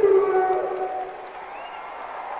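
The last held note of a live rock song dies away about a second in, leaving crowd cheering and applause.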